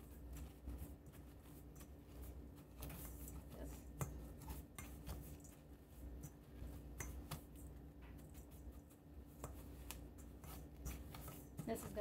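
Pastry blender cutting butter into rolled oats and brown sugar in a stainless steel bowl: its metal blades scrape and click against the bowl at irregular intervals.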